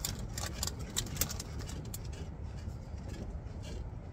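Tortilla chips being chewed: a quick run of sharp crunches in the first second or so, then softer, scattered crunching, over a steady low rumble.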